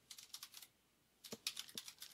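Faint keystrokes on a computer keyboard as a word is typed: a few clicks at first, a pause near the middle, then a quicker run of keystrokes in the second half.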